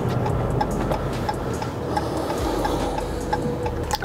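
Car turn-signal indicator ticking steadily, about two ticks a second, as the driver changes lanes, over steady in-cabin road and engine noise.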